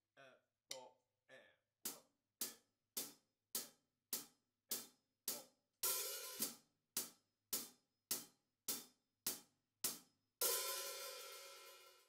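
Hi-hat cymbals struck at a slow, even pace, a little under two strokes a second, mostly closed. The hats open into a brief sizzle about six seconds in, and into a longer sizzle near the end that fades away. This is the open-hi-hat sizzle on the end of beat four.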